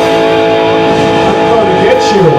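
Live rock band playing, led by an electric guitar holding long sustained notes that bend in pitch near the end, over bass guitar and drums.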